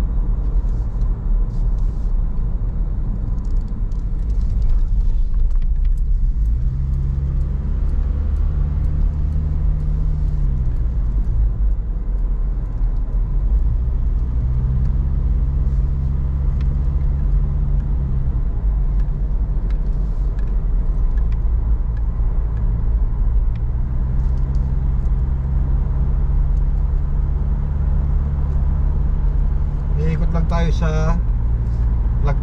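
Car interior noise while driving: a steady low rumble of engine and tyres, with the engine's hum shifting in pitch and fading in and out a few times as speed changes.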